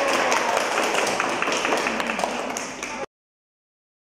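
A group of children clapping their hands, many claps overlapping; it cuts off suddenly about three seconds in.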